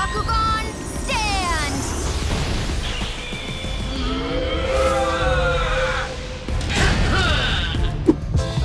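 Animated battle sound effects over dramatic music: falling pitched sweeps about a second in, then a pitched creature cry that rises and falls for about two seconds in the middle, and another sweep near the end.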